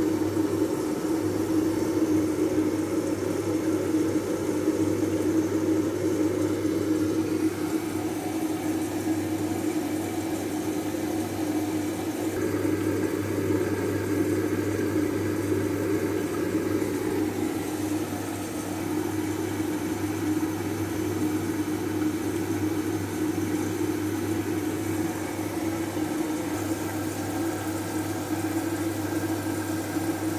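Siemens front-loading washing machine running a wool 40° program: a steady motor and drum hum with a light wash of water noise.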